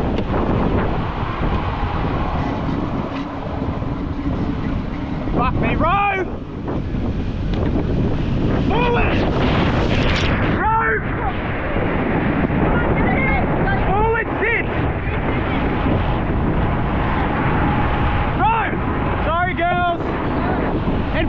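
Breaking surf and whitewash rushing around a surf boat, with wind buffeting the microphone. About ten seconds in, a wave washes over the camera: the sound turns muffled and the high hiss cuts off suddenly.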